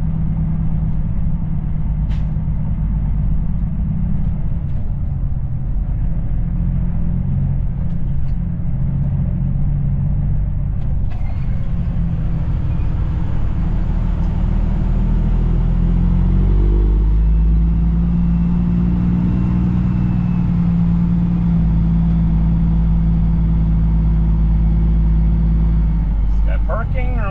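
Semi truck's diesel engine heard from inside the cab, running steadily as the truck drives. About two-thirds of the way through, the engine pitch rises and then holds at a steadier, stronger note as it pulls.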